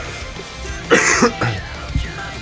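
A man coughs into a microphone about a second in, over band music playing in the background.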